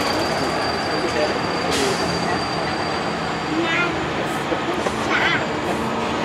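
Open-sided tour tram running steadily, a constant even rolling noise, with passengers' voices low underneath.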